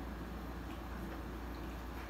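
Quiet room tone with a steady low hum and a few faint, soft ticks.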